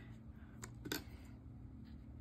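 A few faint, short clicks and soft rustling as hands handle a knitted mitt and small metal tools on a tabletop: a tapestry needle is set down and scissors are picked up to snip the yarn tail.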